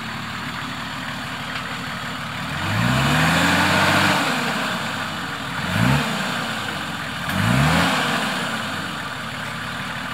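GQ Nissan Patrol's TD42 diesel idling in a muddy water hole and revved hard three times: one longer rev about two and a half seconds in that climbs, holds and falls, then two short blips near the end, each bringing a louder rush of noise. It is working to push through the bog and comes to a stop.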